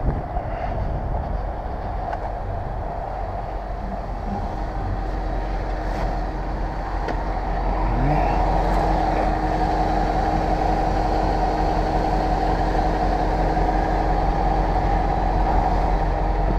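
Road and wind noise from a 2000 Jaguar XJ8 on the move, picked up low on the body near the tyres: a steady rush and rumble over asphalt. About eight seconds in, the V8 engine's note rises as the car speeds up, and the sound grows a little louder, then holds steady.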